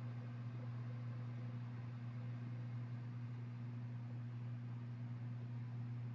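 A steady low hum with a faint hiss, unchanged throughout: the background noise of the narration microphone while nobody speaks.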